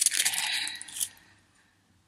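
Small metal jewelry pendants clinking in their thin plastic packet as it is handled, with light crinkling, fading out about a second in.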